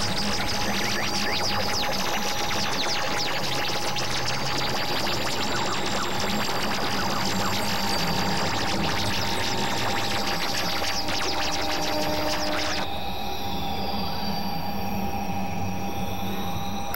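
Experimental electronic synthesizer music: a dense, noisy drone with a steady mid-pitched tone, a pulsing low layer and a spray of quick crackles and gliding high tones. About 13 seconds in, the high crackling cuts off suddenly and the texture thins.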